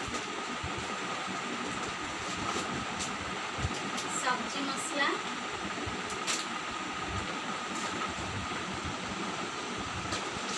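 Plastic grocery packets and a woven plastic sack crinkling and rustling as they are handled, in short scattered bursts over a steady background hiss.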